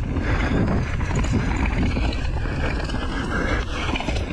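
Mountain bike riding fast down a dirt singletrack: steady wind rumble on the camera microphone over the tyres rolling on packed dirt.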